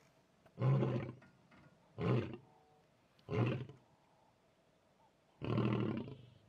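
Male lion roaring: four short, low roars spaced a second or more apart, the last one longer.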